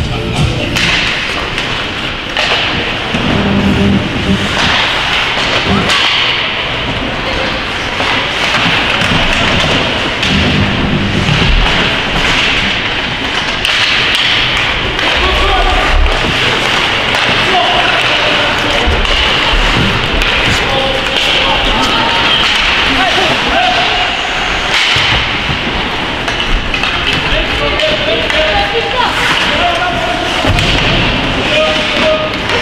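Ice hockey play in an indoor rink: repeated sharp knocks and thuds of sticks, puck and bodies against the boards over the steady echoing noise of the arena, with shouts and voices from players and spectators.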